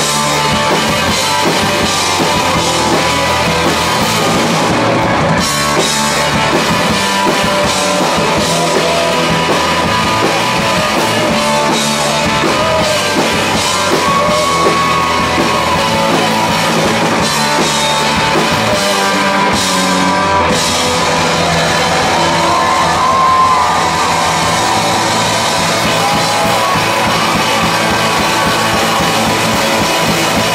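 Live rock band playing at full, steady volume: electric guitars, electric bass and a drum kit driving on without a break.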